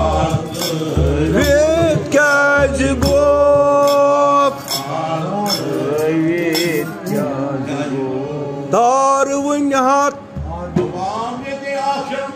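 Men singing a devotional chant over sustained harmonium notes, with hand claps keeping time.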